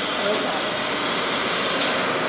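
A steady rushing hiss from print-shop machinery that starts abruptly at the opening and holds evenly throughout, over a low machine hum.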